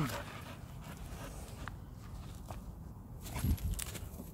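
Footsteps and rustling on rough dry grass, with a few faint clicks and a louder scuffle about three and a half seconds in.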